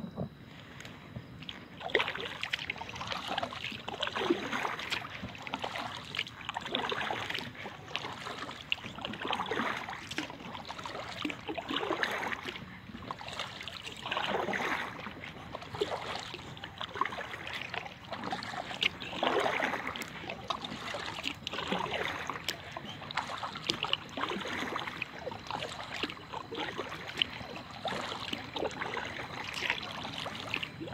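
Kayak paddle strokes in calm river water: a swish of water from the blade about every two and a half seconds, in an even rhythm.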